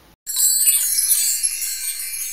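A bright, shimmering chime sound effect of many high twinkling notes, starting about a quarter second in and slowly fading.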